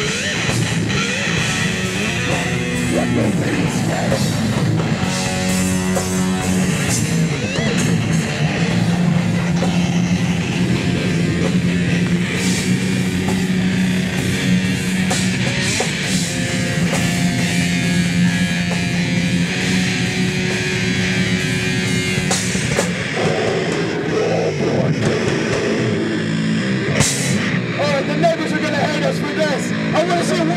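Live metal band playing: heavily distorted electric guitars and a drum kit play loud, steady riffs. Near the end the low end thins out and shouted vocals come in over a microphone.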